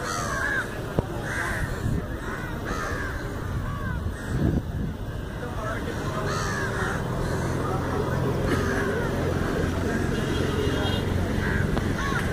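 Crows cawing repeatedly, short arched calls spaced a second or two apart, over outdoor background noise, with a low steady hum setting in about halfway through.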